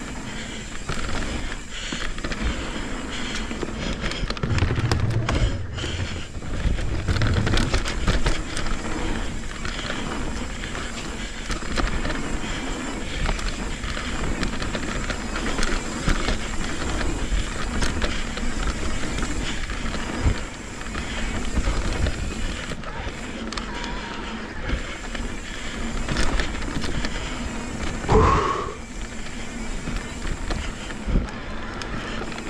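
Mountain bike riding fast down a dirt trail: tyres running over packed dirt, with the bike rattling and knocking over the bumps, and wind rush on the microphone. A brief pitched sound slides up and back down near the end.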